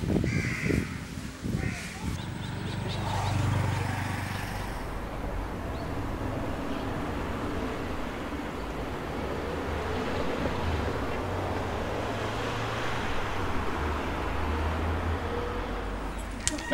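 A bird calls twice in the first two seconds over outdoor ambience, which then settles into a steady hiss with a low rumble.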